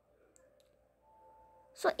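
Two faint, short clicks from hands handling a cardboard roll, in a quiet room; a voice starts speaking near the end.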